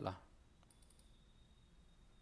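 Faint computer mouse clicks, a few close together about three-quarters of a second in, over quiet room tone with a faint steady high-pitched whine.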